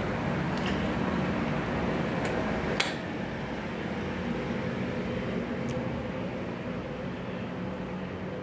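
Steady whirring hum of a running air-conditioning unit, with a single sharp click about three seconds in.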